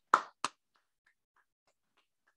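Two short crinkles of a sheet of paper being unfolded and held up, within the first half second, then near silence.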